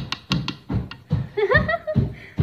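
Girls laughing in quick repeated bursts, with a short voiced rise about one and a half seconds in.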